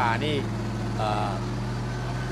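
Off-road 4x4's engine running at a low, steady speed as the vehicle crawls up a muddy bank.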